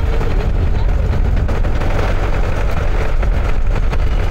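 A tractor engine running close by as it pulls a tree-planting machine through the soil: a loud, steady rumble with a heavy low end.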